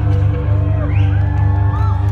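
Live rock band holding a sustained low chord while the crowd whoops and shouts.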